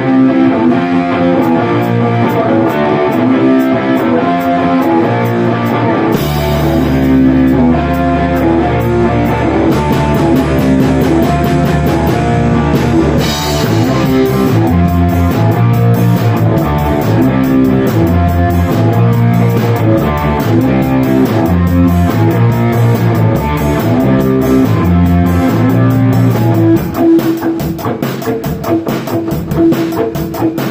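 A rock band playing live in a small rehearsal room: electric guitar chords at first, then a heavy low end and a cymbal crash come in about six seconds in, with full drum-kit drumming from about ten seconds. Near the end the sound thins out to sparser drum hits and a held guitar note.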